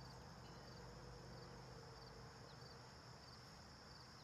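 Faint outdoor ambience of insects chirring in a steady high trill, with a low steady hum underneath.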